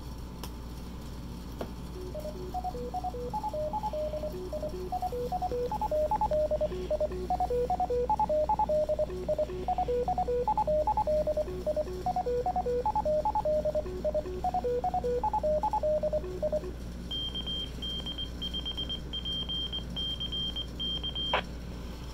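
Byonics Micro-Fox MF-15 two-meter fox-hunt transmitter received through a Baofeng handheld radio's speaker. It plays a tune of short stepping tones for about fourteen seconds, then sends its call sign in Morse code as higher-pitched dits and dahs, and ends with a click.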